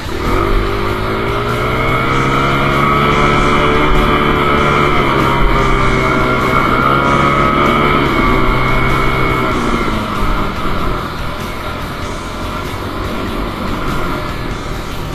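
Dirt bike engine pulling hard as the bike rides the trail, its pitch climbing at the start, dipping and rising again past the middle, then falling away about ten seconds in. Background music runs underneath.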